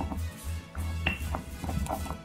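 Stone pestle grinding and knocking in a stone molcajete, crushing grilled onions, garlic and pepper: several short sharp clicks in the second half, one with a brief ring about a second in. Background music plays underneath.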